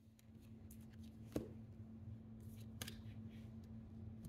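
Tarot cards being handled on a table: soft slides and rustles, with a sharp tap about a second and a half in and another near three seconds as cards are laid down. A faint steady hum underneath.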